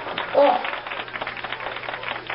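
A utensil stirring brown sugar sauce in a small saucepan, making a quick, irregular run of light clicks and scrapes against the pot.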